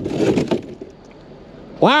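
A long, mud-caked scrap metal bar scraping down onto a boat's deck in one short, rough burst in the first half second, followed by low background noise.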